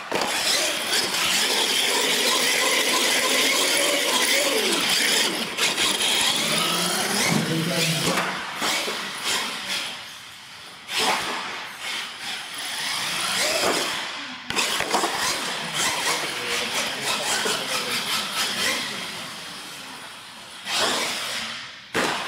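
Electric R/C monster truck motors whining and revving up and down in bursts, with tyres scrubbing on a concrete floor and a few sharp knocks from the truck landing or tumbling.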